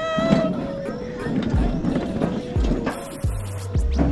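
A woman's excited "woo" trailing off, then low rumbles and rushing wind noise as a toboggan starts down a steel slide, under background music.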